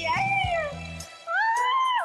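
A woman singing high, gliding notes over a backing track; the track's low beat drops out about a second in.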